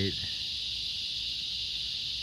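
Many cicadas calling together in a steady, high-pitched drone that never breaks.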